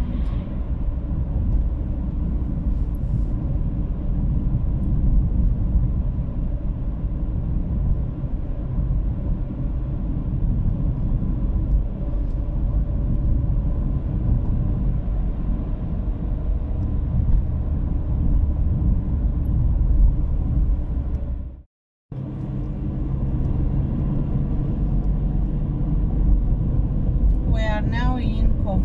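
Steady low rumble of a car driving, engine and tyre road noise heard from inside the cabin. The sound cuts out completely for a moment about 22 seconds in, then the same rumble resumes.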